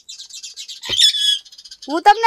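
Small birds chirping rapidly in high-pitched bursts, with a louder, clear whistled note about a second in.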